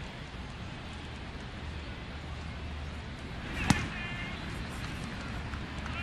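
Steady ballpark crowd murmur, then about two-thirds of the way through a single sharp pop as a breaking ball lands in the catcher's mitt, a close pitch taken for a ball. A brief faint shout follows the pop.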